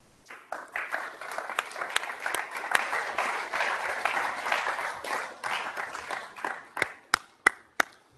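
Audience applause: many hands clapping together, starting just after the start and tapering off to a few last scattered claps near the end.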